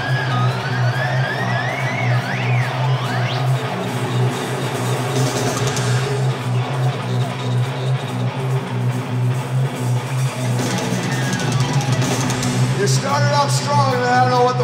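Live metal band holding a loud, steady, low droning note on guitars and bass. Several rising high-pitched squeals sound over it in the first three seconds or so.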